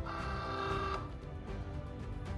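Cricut Joy's feed motor drawing a sheet of vinyl in to load it: a short steady motor whine lasting about a second, under background music.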